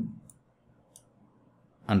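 Two faint computer mouse clicks about a second apart, heard between spoken words.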